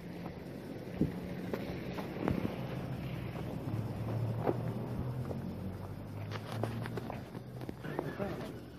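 A low, steady engine hum that grows louder through the middle, with scattered irregular knocks and clicks.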